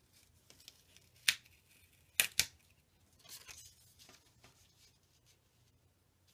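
Paper and cardstock pieces being handled and set down on a paper layout. There is a sharp crisp click about a second in, two more in quick succession just after two seconds, then a short paper rustle.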